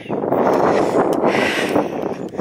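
Wind buffeting the microphone: a loud, uneven rush of noise.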